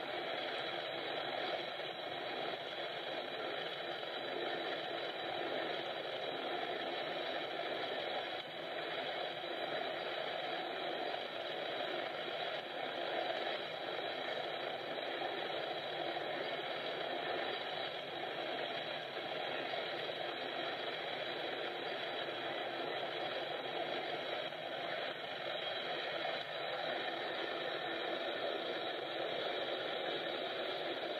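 BNSF coal train passing a grade crossing, heard through a webcam stream as an even, unchanging noise with no distinct clanks or horn.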